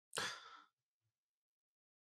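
A single short sigh, a breathy exhale lasting about half a second near the start.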